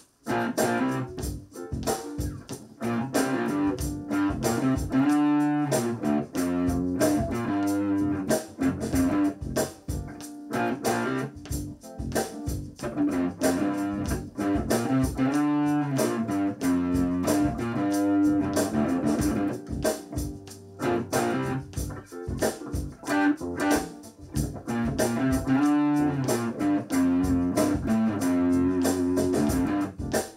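Electric guitar being played: a continuous run of picked single notes and chords with no pause.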